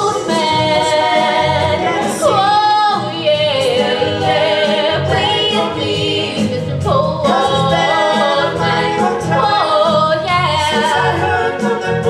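Several voices singing a 1960s-style pop number in harmony over backing music with a steady beat and percussion.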